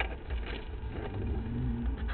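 An engine running steadily, heard as a low rumble.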